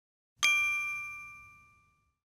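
A single bell-like ding about half a second in, ringing out and fading away over about a second and a half: a chime sound effect for the logo reveal.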